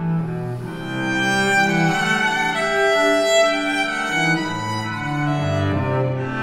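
A small ensemble of violins and cello playing a slow passage of sustained, overlapping bowed notes, the cello holding low notes beneath higher violin lines, with each note changing about every second.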